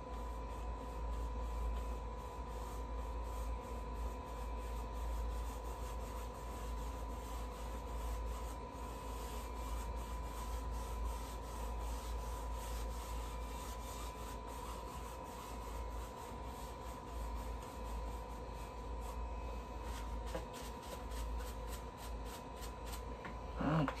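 Paintbrush rubbing and scrubbing across a canvas in repeated strokes, over a steady faint hum.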